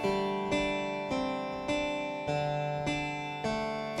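A plucked, guitar-like melody of single notes, a new note about every 0.6 s, each fading away before the next, played through the Phonolyth Cascade diffusion reverb with its Shape control at maximum, so that it just sounds dry, with little reverb tail.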